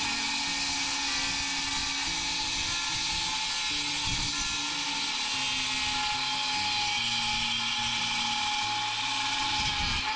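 Milwaukee cordless circular saw running steadily as it cuts through a composite decking board: an even, high-pitched whine with one held tone that does not change through the cut.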